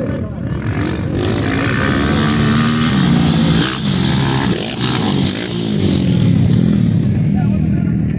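230cc dirt bikes racing past, their engines revving with pitch rising and falling several times as they accelerate and ease off.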